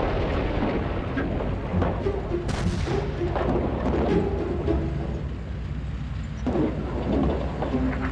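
Dubbed battlefield sound effects: a continuous low rumble with a few sharp booms of explosions or gunfire, about two and a half and six and a half seconds in, over faint background music.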